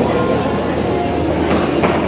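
Loud, steady arena din: a dense mix of background voices and clattering, with a few short clatters about a second and a half in.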